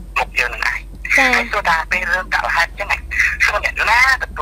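Speech only: continuous talk in Khmer, with no other sound standing out.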